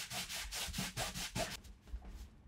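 Cloth rubbed briskly back and forth over the satin-finish top of a Taylor GS Mini Koa acoustic guitar, scrubbing off built-up grime and sweat with satin guitar cleaner. Quick, even strokes, several a second, that stop about one and a half seconds in.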